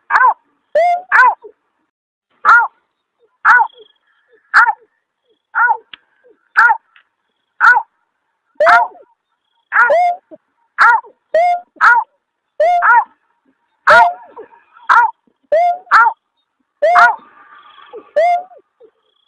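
Lure recording of the berkik, a snipe, giving a short 'aw' call about once a second, often as a quick pair, each note dipping slightly in pitch. It is the call that night-time bird trappers play to draw the bird in.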